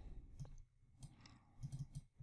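A few faint computer mouse clicks: one about half a second in, another at about one second, and a quick cluster near the end.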